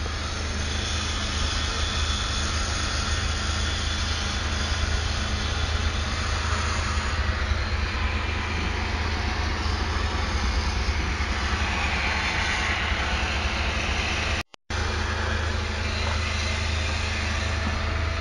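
Steady low outdoor rumble with no distinct events, cut off by a brief dropout about fourteen and a half seconds in.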